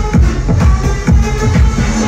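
Loud electronic dance music from a DJ set over a nightclub sound system, driven by a steady, regular kick drum beat with synth parts above it.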